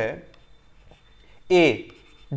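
A man speaks a word in Hindi, then pauses for about a second, then says one more syllable. In the pause there is faint scratching and ticking from drawing with a pen on a whiteboard, over a thin steady high whine.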